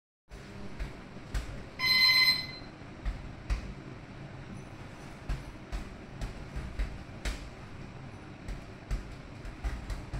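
Boxing-glove punches landing on a double-end bag: irregular single and double thuds, roughly one to two a second. A loud half-second electronic beep sounds about two seconds in.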